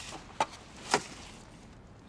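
Two short, light knocks about half a second apart, as rubbish is handled and dropped while a car is cleared out.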